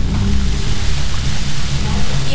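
Steady loud hiss with a low hum underneath, unchanging throughout.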